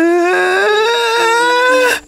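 A cartoon character's long drawn-out vocal cry, rising steadily in pitch and held until it cuts off at the end, over background music notes.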